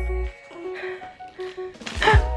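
Background music in a quiet stretch: a few short melodic notes, spaced apart, with the bass beat dropping out.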